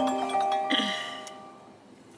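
Mobile phone ringtone playing a marimba-like tune of quick struck notes. It cuts off about a second in, when the call is picked up, and the last notes fade away.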